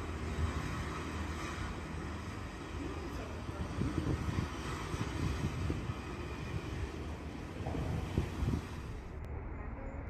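Steady low background rumble, with irregular low bumps through the middle. Near the end the sound changes abruptly to a duller background.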